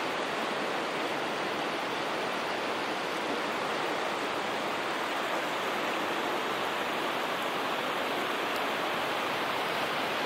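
Steady rushing of running water, an even noise with no breaks.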